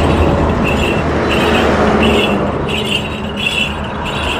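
Steady road and traffic noise heard from a moving car on a highway, with a low engine hum and wind.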